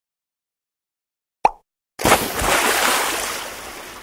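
Logo-intro sound effects. A single short pop comes about one and a half seconds in, like a button click. Half a second later a loud rush of noise starts suddenly and fades out over about two and a half seconds as the logo appears.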